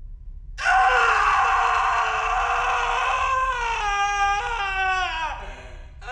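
A man's long scream of terror, very loud, held on one high pitch for about three seconds, then wavering and sliding down before it breaks off.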